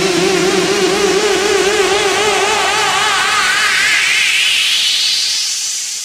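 Electronic dance music from a techno/house DJ mix, in a build-up without drums. Two low synth tones are held with a slight wobble while a sweep rises steadily in pitch for about five seconds, then the music thins out and fades near the end.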